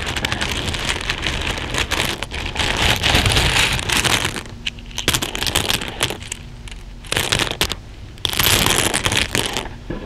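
Plastic buttons, beads and sequins clattering and rattling against each other as a hand stirs through them in a cloth-lined plastic bowl, close to the microphone. The clatter is continuous for the first four seconds, then comes in shorter bursts with pauses between, the last burst near the end among the loudest.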